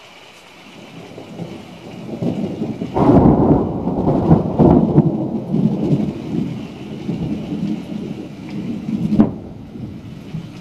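Thunder: a low rumble builds, breaks into a loud rolling peal about three seconds in that rumbles on for several seconds, then a sharp crack near the end before it dies away.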